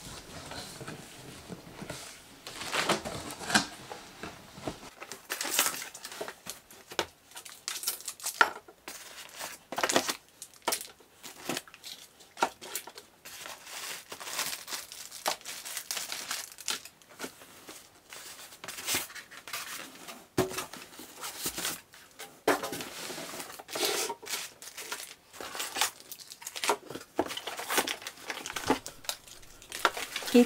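Unboxing a printer: the cardboard box flaps are opened and plastic packaging bags crinkle and rustle, with irregular crackles throughout.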